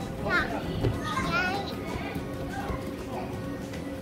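A young child's short squeals and laughter, with other children's voices and background music in the room.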